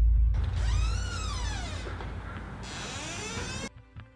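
A dramatic film sound effect in place of the background music: a deep boom whose rumble fades over a few seconds, overlaid with swooping, warbling tones that rise and fall. It cuts off just before the end, when the beat-driven music comes back.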